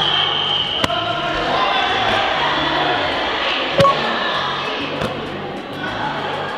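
Background music with a steady beat, over which a soccer ball smacks into a goalkeeper's gloved hands as he catches it, a sharp thud about a second in and a louder one near the four-second mark.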